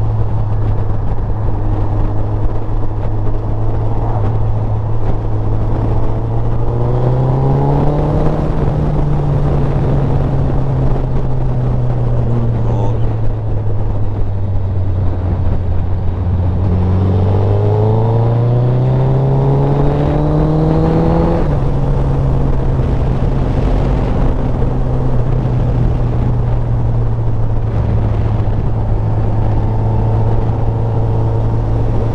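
Sport motorcycle engine running steadily at cruising speed. Its pitch rises twice as it accelerates, around seven seconds in and again from about seventeen to twenty-one seconds, then drops suddenly after the second rise.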